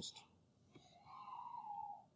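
A pause in a man's speech: the end of a word, a faint click, then a faint breathy, whisper-like sound that falls slightly in pitch.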